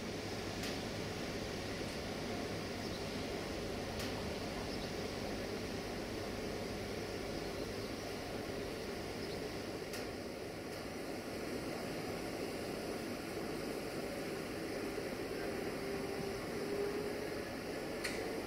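Steady rumbling hiss of a passenger train hauled by a Bombardier Traxx electric locomotive pulling slowly out, with a faint tone that rises slightly near the end.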